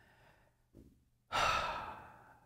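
A man breathes in softly, then about a second and a half in lets out a loud, breathy sigh that fades away.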